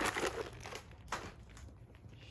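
Short bursts of crinkling, rustling noise: a louder one at the start and a briefer one about a second in.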